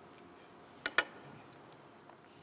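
Two quick light clinks close together about a second in, the second louder: cutlery tapping a plate during tasting, over quiet studio room tone.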